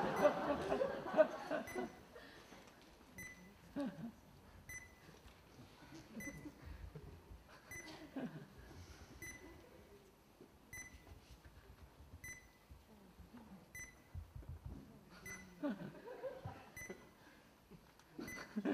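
A short electronic beep repeating steadily about every one and a half seconds, with fainter ticks between, over quiet audience murmuring and stirring in a theatre; the voices are busier in the first couple of seconds and again near the end.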